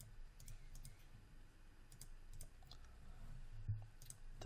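Faint computer mouse clicks, a handful at uneven intervals, as paint-effects flower strokes are placed in the 3D software.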